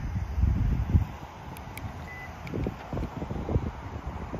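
Wind rumbling on the microphone, strongest in the first second and gusting again later. Over it come a couple of faint clicks and one short faint beep a little past the middle, as the 2019 Lincoln MKC responds to its key fob's lock and unlock buttons.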